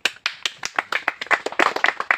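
A small group of people clapping by hand in quick, uneven claps that start abruptly.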